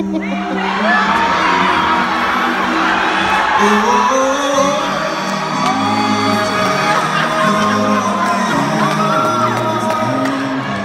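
A male vocal quartet singing in harmony through microphones, with several held notes at once over a low bass line and vocal runs gliding above, while the audience whoops and cheers.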